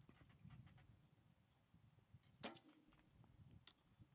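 Near silence, broken once a little past halfway by a single short, sharp snap of a recurve bow's string as the arrow is loosed.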